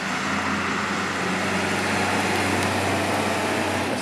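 Fire truck engine running as the truck approaches, a steady low drone with road noise.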